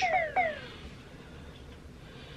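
Two short vocal sounds, each falling in pitch, in the first half-second, then quiet room tone.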